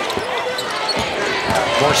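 Basketball dribbled on a hardwood court: several sharp bounces about half a second apart over the arena crowd's steady noise.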